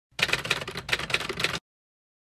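Typewriter sound effect: a quick run of keystrokes lasting about a second and a half, then it stops abruptly.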